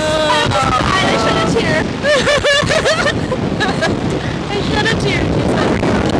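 Two women screaming and laughing on a SlingShot reverse-bungee ride, with wind rushing over the seat-mounted microphone. A long held scream opens, and wavering screams come around the middle and again near the end.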